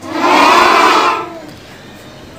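A class of schoolchildren answering together in one loud chorused shout, lasting about a second and a half, in reply to the teacher's question.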